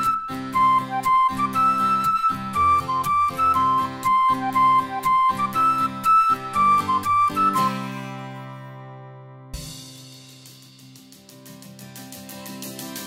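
Instrumental children's song music: a high lead melody over a steady beat. About seven and a half seconds in, the music stops and rings out, then a soft thump and a fast ticking that speeds up near the end.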